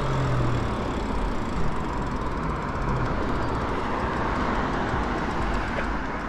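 Wind rushing over the microphone and tyre noise from an e-bike riding along a paved street, a steady rushing sound. A low hum falls slightly in pitch and fades out about a second in.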